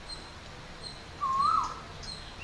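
A bird calling: one whistled call that rises and then drops, a little over a second in, with fainter high chirps over a steady background hiss.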